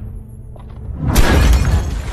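Low, bass-heavy outro music, then about a second in a sudden loud crashing, shattering sound effect that runs on for most of a second over a deep rumble.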